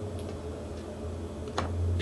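A low steady hum, with a single sharp click about one and a half seconds in.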